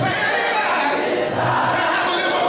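Voices singing together in a church song, led by a man's voice through a microphone.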